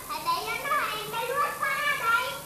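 Children's voices speaking.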